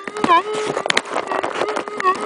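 Minelab gold detector sounding through its speaker: a steady threshold tone, broken twice by a pitched signal response that dips and comes back up as the coil passes over a strong buried target. A few sharp clicks about a second in.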